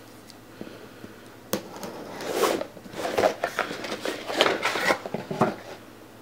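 Packaging being handled while a small cardboard subscription box is unpacked: a sharp click about a second and a half in, then irregular rustling and crinkling.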